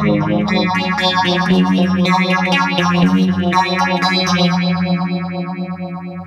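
Electric guitar played through a NUX Mighty Air modelling amp on its clean channel with the phaser effect on, a run of notes and chords. The last chord is held and fades out near the end.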